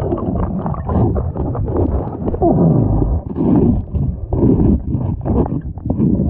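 Underwater scrubbing of a fouled fibreglass catamaran hull, heard through the camera's underwater housing. Rough scraping strokes swell and fade about once a second over a murky, gurgling water background.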